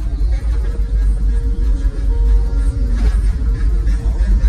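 Music with heavy, continuous deep bass, played loud through car audio subwoofer systems.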